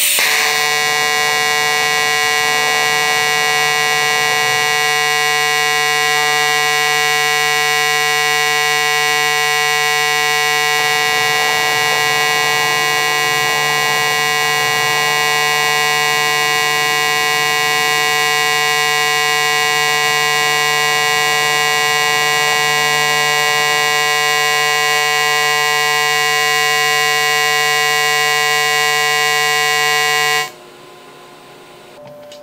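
TIG welding arc from an HTP Invertig 251 on standard, hard-switched DC pulse, giving off a loud, steady, high-pitched tone with many overtones. The annoying tone comes from the current clicking sharply back and forth between peak and background amperage many times a second. It starts suddenly as the arc strikes at the very beginning.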